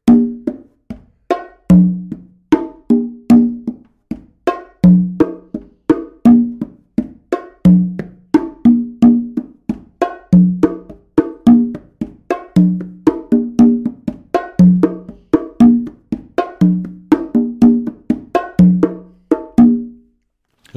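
Conga and bongo set played by hand in a repeating samba groove. A low open tone sounds on the tumba conga about every two seconds, with pairs of higher open tones on the hembra bongo, and a steady run of sharp fingertip strokes and slaps on the macho bongo in between.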